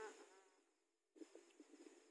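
A baby's faint, high-pitched babbling in short rising-and-falling syllables, fading about half a second in, then a second brief burst of sound near the end.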